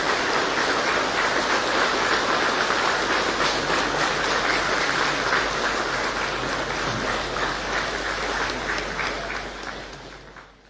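Large audience applauding steadily, fading away in the last second or so.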